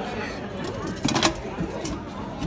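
Soda vending machine dispensing a can: a short clatter of knocks about a second in, then a sharp click near the end, over a murmur of background voices.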